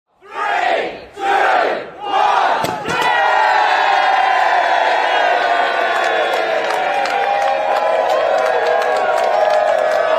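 Crowd chanting a countdown, "three, two, one", in three loud beats, then a short pop as the confetti is fired, and the crowd breaks into sustained loud cheering and whooping.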